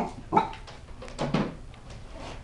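A small Chihuahua–Cocker Spaniel mix puppy barking three times in quick, sharp yaps, wary of a new fuzzy toy.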